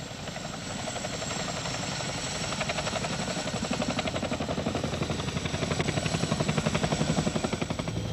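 CH-47 Chinook tandem-rotor helicopter flying low overhead, its rotors beating in a rapid, even rhythm that grows steadily louder.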